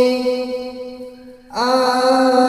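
A man singing a Bengali naat (Islamic devotional song) into a microphone: he holds one long note that fades away, then starts the next sung phrase about one and a half seconds in.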